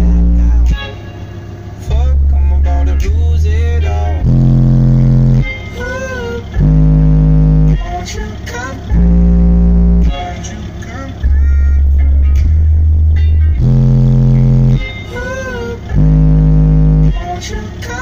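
Two DD Audio 612 12-inch subwoofers in a boxed enclosure playing a song loud. Deep bass notes about a second long come every one to two seconds and swell the loudness, under a sung vocal line.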